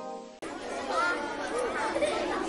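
The last notes of a children's song fading out, then, after an abrupt cut less than half a second in, a soft background of chattering voices with music under it.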